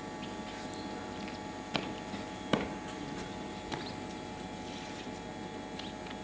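Steady low electrical hum from a public-address system between announcements, with a few faint sharp clicks, the clearest about two and a half seconds in.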